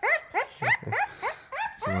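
Three-week-old puppy crying while it is held and its paws handled: a run of short squeals, each rising in pitch, about three a second.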